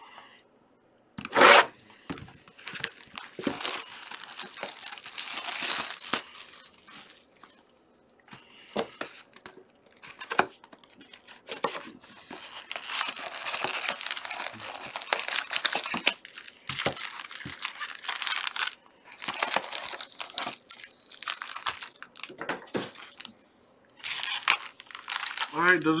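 Plastic wrapping being torn and crinkled as a trading-card hobby box is opened, in irregular bursts of tearing and crinkling, with one sharp loud burst about a second in.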